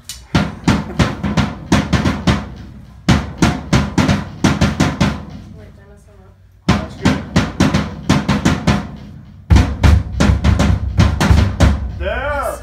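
Drum kit played in four short phrases of steady strokes on the drums and cymbals, about four strokes a second, with a brief pause between phrases.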